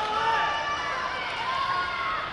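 Indistinct voices of several people talking over one another in a large hall.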